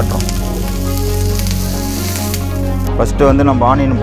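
Banana leaf pressed flat on a hot iron griddle, sizzling with a steady hiss that cuts off suddenly about three seconds in.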